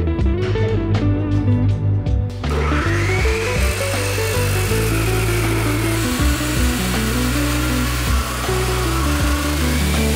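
Abrasive chop saw with a 14-inch cut-off wheel grinding through 1/8-inch-wall steel tubing, starting about two and a half seconds in as a continuous grinding whine. Background music plays throughout.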